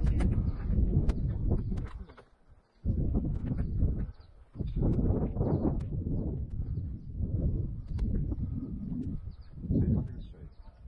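Wind buffeting the camera microphone outdoors: a low rumble in gusts that drops out twice, with scattered light clicks.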